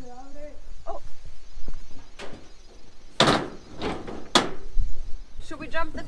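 A stuck door on a corrugated-metal hut being shoved and rattled, with two loud bangs about three and four and a half seconds in.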